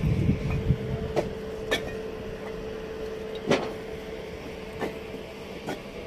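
Fired clay bricks clinking against each other as they are loaded by hand into a tractor trolley: about five sharp clinks spread over several seconds, the loudest near the middle. Under them is a steady low hum, with some low rumbling at the start.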